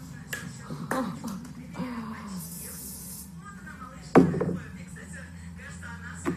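Indistinct voices in a small room over a steady low hum, with a short hiss about halfway through and a loud, sudden sound about four seconds in.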